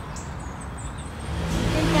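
Steady low background rumble that grows louder about a second and a half in.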